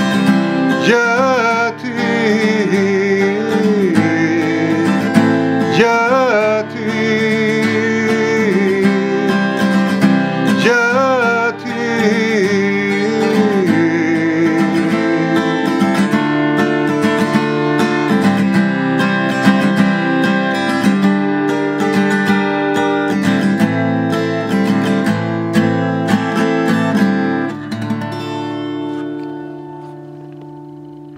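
Instrumental outro of a song on acoustic guitar: steady strummed chords, with a held, wavering melody line over them in the first half. The music drops away near the end as the song finishes.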